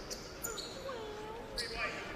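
Quiet basketball gym ambience, with a faint distant voice calling out from about half a second in and a few brief high squeaks.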